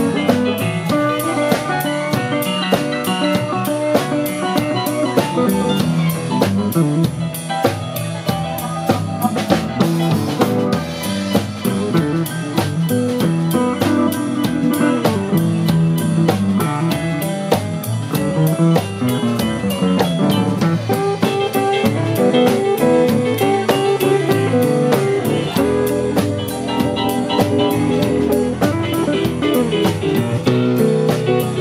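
Live blues band playing an instrumental passage with no singing: keyboard, guitar, upright double bass and drum kit keeping a steady beat.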